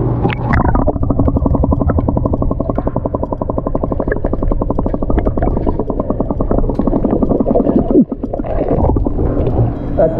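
Air gurgling and bubbling through a clear plastic breathing tube held underwater, a fast, even train of bubbling pops that stops abruptly about eight seconds in.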